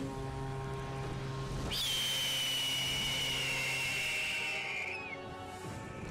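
Intro sound design: a low, steady music drone, joined about two seconds in by a long, high, whistling screech for the fiery phoenix. The screech holds one pitch for about three seconds over a rushing noise, then dips and cuts off near the end.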